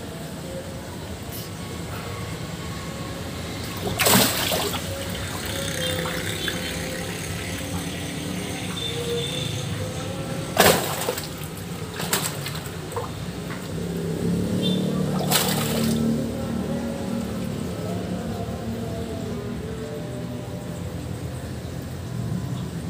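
Water splashing as a large giant snakehead (toman) thrashes in a landing net at the surface of a pond: sharp splashes about 4, 11, 12 and 15 seconds in, the loudest near 11 seconds, over steady background music.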